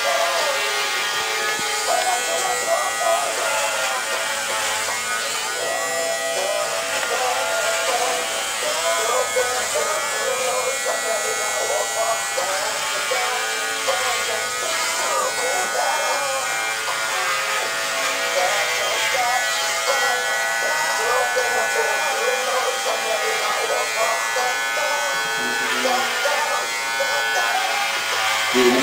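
Electric hair clippers buzzing steadily while cutting hair at the back of the head and neck. Music with a singing voice plays over the buzz.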